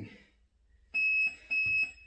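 Digital interval timer giving two short, high, steady beeps about half a second apart, marking the end of a one-minute round.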